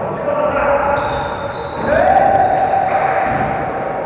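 Players' voices echoing in a sports hall during a volleyball rally, with one long held call that rises at its start about two seconds in. A few sharp knocks of the ball being struck come just after it.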